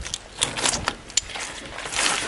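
Tough, thorny skin being pulled off a thornback ray wing with pliers, with a few short rasping tears and a sharp click, then handling noise on the cutting board.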